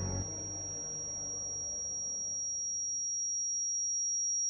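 Ear-ringing sound effect: a single steady high-pitched sine tone, slowly growing louder, with faint background music fading out beneath it over the first couple of seconds.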